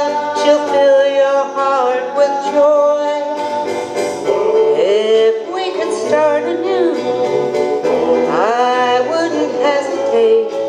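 A woman singing into a microphone over instrumental accompaniment. She holds a long note with vibrato, then sings phrases that scoop and slide in pitch.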